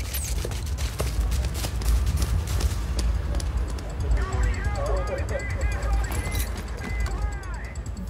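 Cartoon sound effects: quick running footsteps over a steady low rumble, then, about halfway through, a flurry of short high squeaks.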